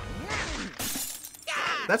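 Cartoon fight sound effects: a short voice, then a harsh crash-like crunch about a second in and another noisy burst with a strained cry near the end.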